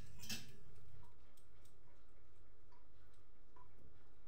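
Faint light ticks, roughly once a second, over a low steady hum, with two sharper clicks in the first half-second.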